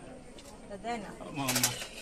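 Brief, indistinct murmurs of voices from people gathered close by, two short utterances in the middle and near the end.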